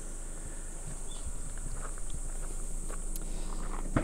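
Footsteps crunching on gravel, over a steady high insect drone. A single sharp click near the end comes from the hatch release of the Honda Accord wagon's tailgate being pulled.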